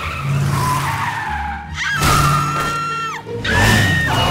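Cartoon car sound effects over background music: an engine running, then a long tire screech about two seconds in and a second, higher squeal near the end.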